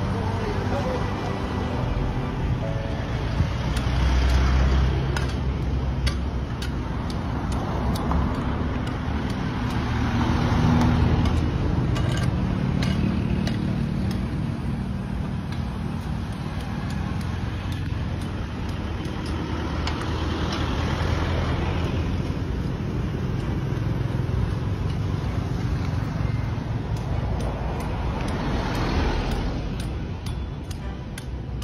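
Road traffic: motor vehicles passing one after another, each swelling and fading over a steady low engine rumble, with scattered light clicks.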